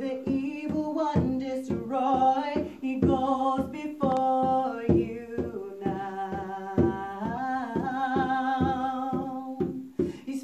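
Woman singing long, drawn-out notes over a steady conga drum beat of about three strokes a second; near the end she holds one note for about two seconds.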